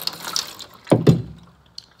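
Water poured out of beakers onto two soil plugs in measuring pitchers, a splashing hiss that stops a little over half a second in. About a second in come two loud knocks close together.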